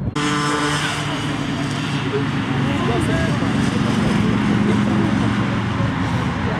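A steady engine-like hum that swells slightly in the middle, under scattered faint shouts from rugby players.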